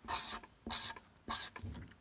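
Felt-tip marker (Sharpie) scratching on paper: three quick strokes as the zeros of a number are drawn.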